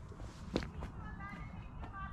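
A faint, distant voice calling out, with a single footstep about half a second in, over a low wind rumble on the microphone.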